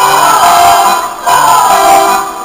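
A women's folk choir singing a folk song to accordion accompaniment, with a brief break between phrases a little past the middle.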